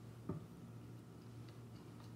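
Quiet room hum with a few faint ticks, the clearest about a third of a second in.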